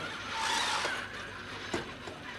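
Baxter robot arm being guided by hand: a brief rustling whir as the arm is swung into place, then one sharp click near the end.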